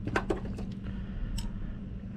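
A few light, separate clinks of steel combination wrenches being picked out of a toolbox drawer while sizing a bolt, over a steady low hum.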